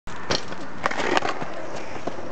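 A BMX bike coming down from a jump onto the asphalt: a sharp knock about a third of a second in, then a cluster of clattering knocks around a second in, over a steady hiss.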